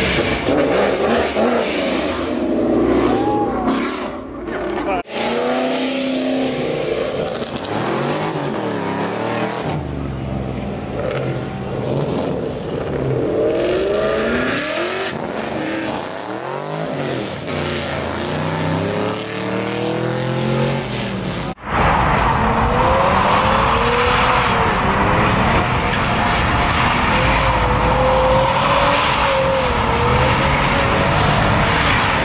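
Car burnouts: engines revving hard and tyres spinning and squealing, with a crowd's voices. About two-thirds of the way in, a louder, sustained burnout sets in and runs on, the engine held high and the tyres screeching.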